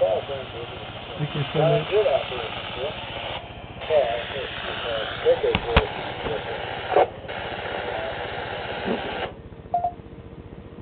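Another station's voice answering a test call over a two-way FM radio's speaker, hissy and band-limited, with the signal dropping out briefly twice. The hiss cuts off sharply about nine seconds in as the transmission ends.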